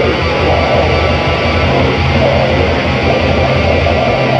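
Raw black metal recording: heavily distorted electric guitars over fast, dense drumming, loud and unbroken.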